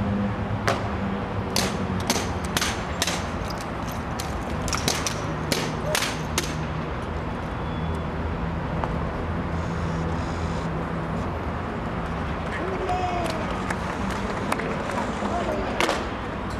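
Honour guard drill: a run of sharp, irregular clicks and knocks through the first six seconds and again at the very end, over a steady low rumble.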